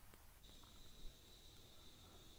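Near silence: faint room tone, with a faint steady high-pitched tone coming in about half a second in.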